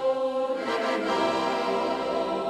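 Choir singing sustained chords, moving to a new chord about half a second in.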